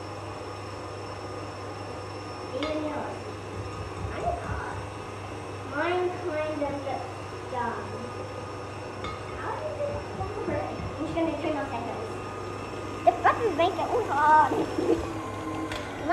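KitchenAid Classic stand mixer running with a steady low hum, creaming butter in its steel bowl, under intermittent voices.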